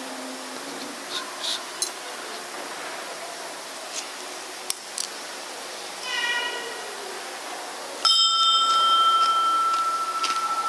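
Altar bell struck once about eight seconds in, ringing on with a clear high tone that slowly fades. Faint clicks and small knocks come before it.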